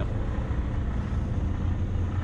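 Steady low rumble of an idling vehicle engine.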